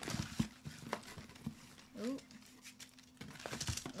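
Boxed snacks being packed into a cardboard box: a few light knocks as packages are set in, then rustling of cardboard and packaging near the end.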